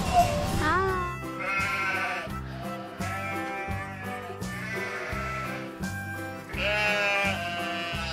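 Background music with a steady beat, and a sheep bleating near the start.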